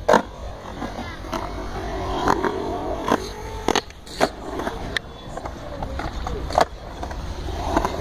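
Skateboard riding a concrete bowl: wheels rolling on the concrete, broken by a string of sharp, irregular clacks as the board and trucks strike the ramp and lip, the loudest just after the start and again about two-thirds of the way through.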